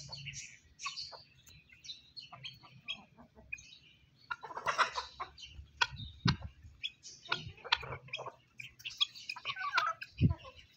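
Chickens clucking while foraging, mixed with many short, high chirps. There is a louder run of calls about five seconds in and another near the end.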